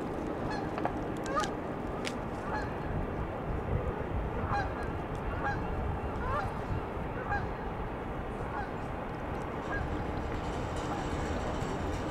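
Geese honking repeatedly, many short calls in quick succession, thinning out near the end, over a steady low background rumble.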